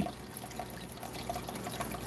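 Aquarium water trickling steadily at the surface, with small drips.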